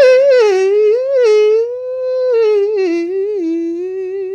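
A woman singing a wordless, full-voiced line that slides up and down in pitch, ending on a long held note with vibrato. A ukulele chord dies away in the first half second.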